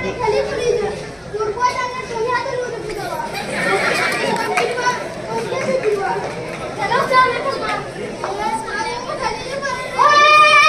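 Several children's voices talking and calling out over one another, with crowd chatter behind.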